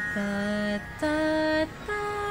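A woman sings three held notes, each higher than the last, over the steady drone of a shruti box sounding Sa and Pa.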